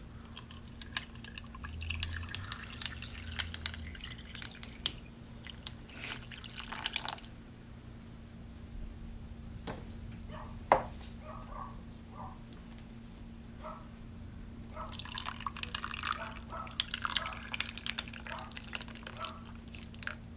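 Chayote juice being poured from a pitcher into glasses packed with ice, the liquid splashing and trickling over the cubes with small clicks of ice. It comes in two pours, one in the first few seconds and another later on, with a quieter gap between.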